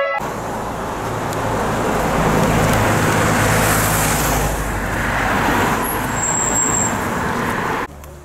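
Road traffic: cars and a minivan driving past close by, a steady rush of engine and tyre noise that swells through the middle and cuts off sharply near the end.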